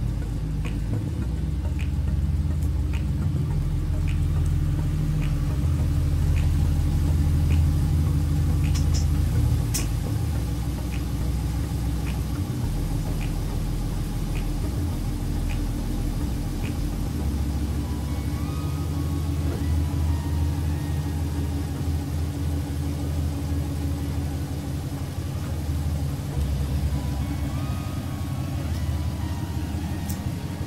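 Ram 1500 pickup's engine idling as the truck is driven slowly out of a garage, a steady low rumble. A light regular ticking, about one and a half ticks a second, runs over it through the first half.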